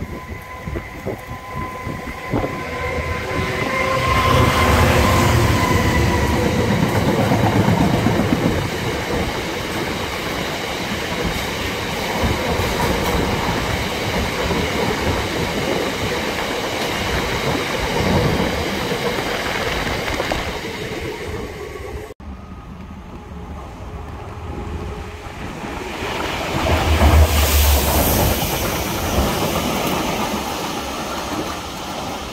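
A diesel freight locomotive passes beneath, followed by a long rake of box wagons rumbling and clicking over the rail joints. After a break, a railhead treatment train's diesel locomotive passes, with its water jets hissing as they spray the rails.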